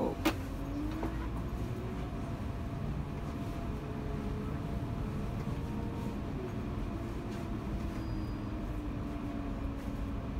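Tour bus driving slowly through town, heard from inside the cabin: a steady low engine rumble with a faint whine that drifts slowly up and down in pitch. There is a single sharp click just after the start.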